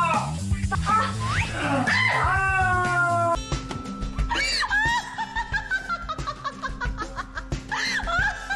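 Background music under a woman's high-pitched cries. About three seconds in, the sound changes to a woman's long laugh that falls in pitch in quick pulses.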